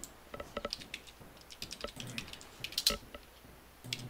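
Computer keyboard being typed on in short, irregular bursts of key clicks, with the sharpest cluster just before the end.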